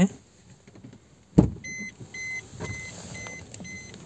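A single sharp thump, then a run of about six short, high electronic beeps, evenly spaced at about two a second.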